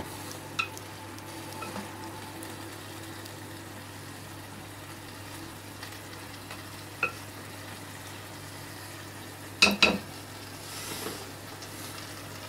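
Chicken breast and Brussels sprouts sizzling quietly in a honey caramel sauce in a pan, a low steady hiss. There are a couple of light clicks, and a louder double knock about ten seconds in.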